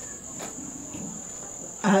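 A cricket trilling steadily on one high, unbroken note. A woman's voice comes in near the end.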